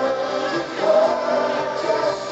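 Live synth-pop band performing: a male lead voice sings held notes with backing voices over a dense synthesizer backing, recorded from the audience.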